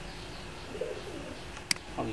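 A single sharp computer mouse click near the end, over steady background hiss, with a brief faint low-pitched sound just under a second in.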